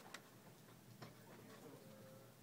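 Near silence: quiet room tone with a few faint, isolated clicks.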